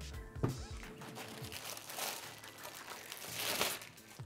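Clear plastic packaging crinkling and rustling as a hovershoe is handled, loudest near the end, over soft background music.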